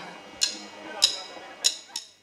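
Drummer's count-in: four sharp clicks of drumsticks, the first three a little over half a second apart and the last coming quicker, just before the band starts the song.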